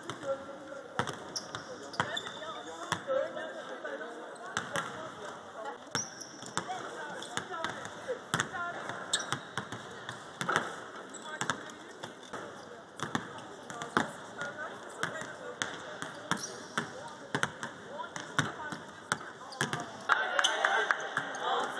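Basketballs bouncing on the court during a team practice, many sharp, irregular bounces overlapping from several balls at once, with voices in the background.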